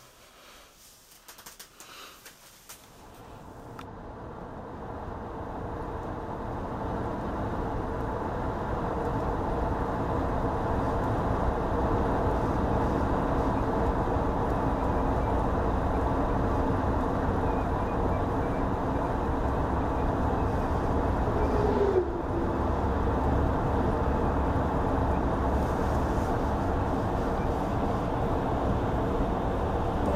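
Steady road noise of a car driving, heard from inside the cabin: a low rumble of tyres and engine that fades in over the first several seconds and then holds even.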